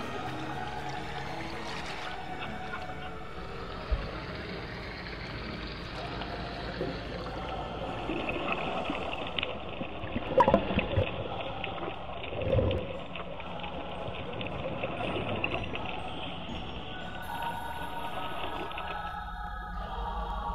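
Underwater bubbling and gurgling of scuba divers' exhaled bubbles, under background music, with louder rushes of bubbles about halfway through.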